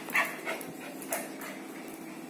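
Lhasa Apso puppy giving three short barks during play, the first the loudest.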